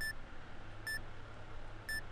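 Keypad beeps of a handheld card payment terminal, a fake one, as a PIN code is typed in: three short, identical electronic beeps about a second apart.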